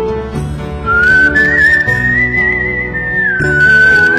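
Background music: a high melody held in long, slightly wavering notes over soft sustained chords. The melody enters on a high note about a second in.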